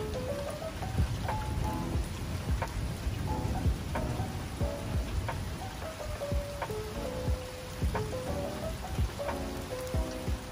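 Steady rain falling, heard as an even hiss with scattered drop sounds, with soft background music playing a stepping melody over it.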